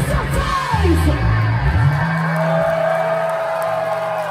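Live rock band playing loudly, with electric guitar and bass: a falling pitch glide about half a second in, sliding bass notes, and a single high guitar note held from about halfway through.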